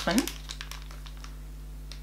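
A few soft crinkles of a foil sheet-mask sachet being handled, then only a faint steady hum.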